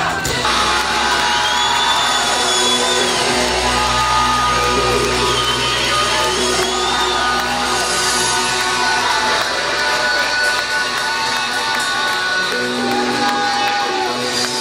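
Loud live band music with a held low bass and sustained notes; voices shout over it.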